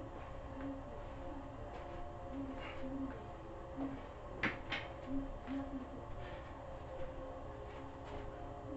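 Steady hum of a small concrete room with a few soft footsteps and light knocks, including two sharper clicks close together a little after the middle.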